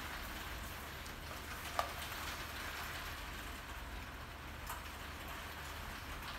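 Steady hiss of heavy rain falling outside, with a couple of faint ticks.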